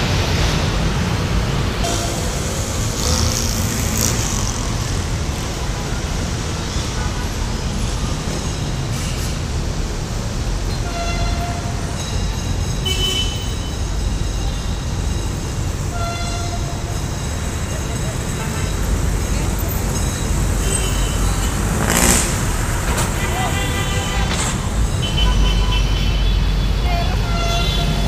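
Passenger train coaches rolling past close by, with a steady low rumble of wheels on rail and a single sharp clank about two-thirds of the way through.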